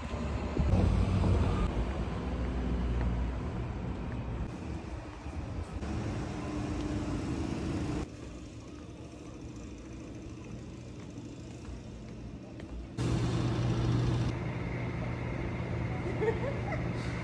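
Street traffic ambience with a vehicle passing, loudest about a second in. The background drops abruptly to a quieter outdoor hush about halfway through, then jumps back up to a steady low hum near the end.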